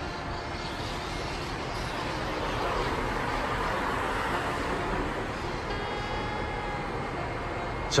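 Steady outdoor street noise, with a vehicle passing: the noise swells about three seconds in and then fades.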